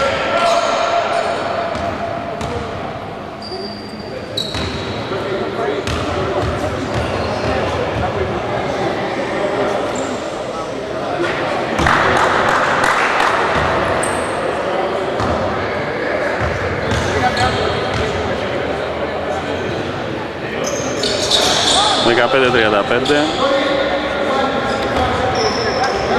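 A basketball game in a large gym: the ball is dribbled on the hardwood floor while players and spectators call out, with the sound echoing around the hall.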